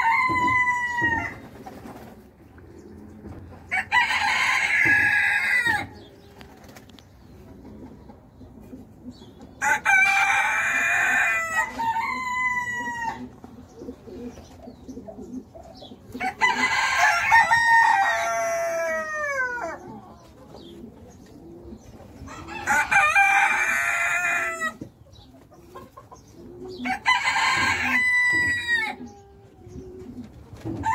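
Rooster crowing, a loud crow about every six seconds, each lasting about two seconds and falling in pitch at the end.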